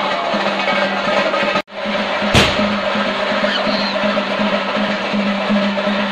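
Temple drums, the chenda drumming that accompanies theyyam, played fast and dense, with a steady low tone under them. The sound drops out for an instant about one and a half seconds in, followed shortly by a sharp click.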